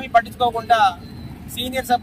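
A man speaking Telugu, with a short pause about a second in. Steady street traffic noise runs underneath.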